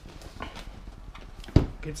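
Hands handling a cardboard product box, with a sharp knock about one and a half seconds in, as the lid is being worked open.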